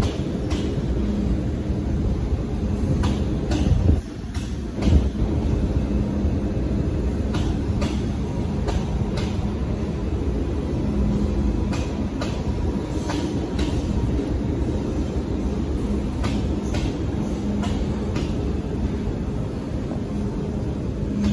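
MTR Tsuen Wan Line electric train rolling slowly through depot pointwork, with a steady low rumble and a faint hum. Its wheels click irregularly over rail joints and points, with one louder knock about five seconds in.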